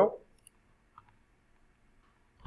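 A spoken word ends, then two faint computer mouse clicks follow about half a second apart as the program is run.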